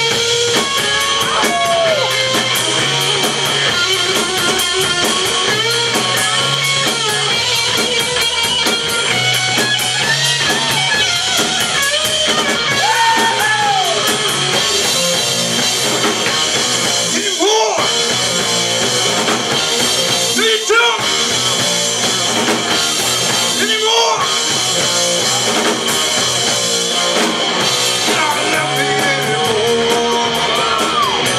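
Live rock band playing loud: distorted electric guitar through Marshall amplifiers, bass guitar and drum kit, with bent guitar notes here and there.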